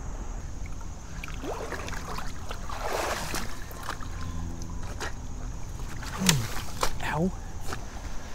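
Footsteps and rustling as someone picks their way through plants and over rocks at the creek's edge, with water sloshing, a loud rustle about three seconds in, and a few short breathy voice sounds of effort.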